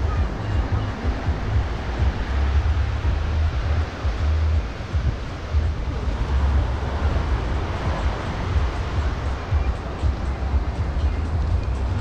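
Wind buffeting the microphone in uneven gusts over a steady wash of surf breaking on the shore.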